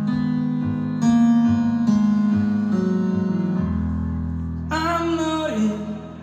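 Live rock band playing the start of a song: electric guitar and bass chords changing about once a second, growing louder about a second in, with a lead vocal line coming in near the end.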